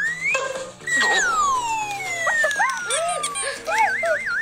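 Cartoon-style sound effects over background music: a quick rising whistle, then falling slide-whistle glides, one long slow fall starting about two seconds in, and a fast wobbling warble near the end.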